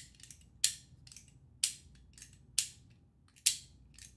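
The spring-loaded hammer of a 3D-printed flare gun replica is cocked and let fall again and again. It gives five sharp plastic snaps about a second apart, with faint clicks between them as it is drawn back. The hammer and its spring are working.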